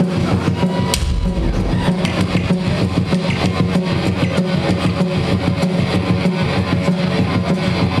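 Live rock band playing loud and dense: electric guitars and bass over a drum kit, with no singing.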